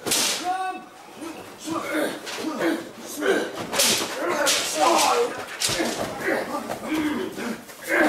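Sharp slaps and hits of a staged hand-to-hand fight: one crack right at the start, then several more about halfway through, among voices without clear words.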